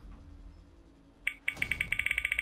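Digital spinning-wheel sound effect: after a faint start, a rapid run of high, bright ticks begins about a second and a half in, roughly a dozen a second.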